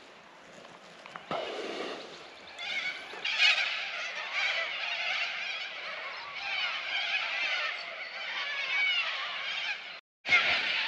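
Many wild birds calling at once, a dense dawn chorus of short rising and falling calls that swells from a few seconds in, with a single sharp click a little after the first second.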